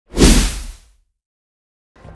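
Intro logo sound effect: a single swoosh with a deep low boom under it, rising fast and fading out within about a second, followed by silence.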